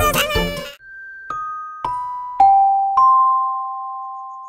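A cartoon character's wailing cry cuts off just under a second in. A chime sting follows: four struck bell-like notes about half a second apart, stepping down in pitch, the last two ringing together and slowly fading.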